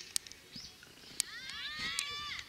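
Several high-pitched voices of players shouting out together on a football field, rising in loud near the end, after a quieter stretch broken by a few sharp taps.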